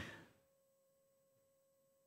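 Near silence: room tone with a faint steady tone.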